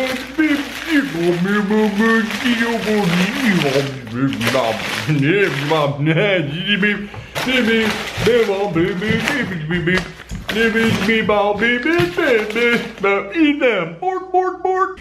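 A man's voice making continuous sounds with no words the speech recogniser could make out, over brown packing paper crinkling and rustling as a boxed action figure is handled.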